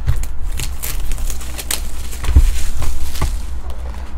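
A cardboard trading-card hobby box being torn open by hand, with a run of crinkling and ripping from its wrapping and flaps.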